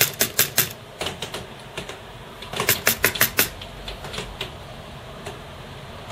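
Fingers tapping and clicking on a Commodore Amiga A500 keyboard: a quick run of clicks at the start, a denser cluster around the middle, and a few scattered taps, done to provoke a suspected bad connection behind its flashing Caps Lock error.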